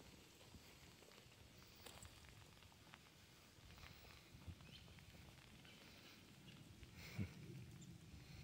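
Near silence: faint scattered ticks and crackles, with one soft thump about seven seconds in.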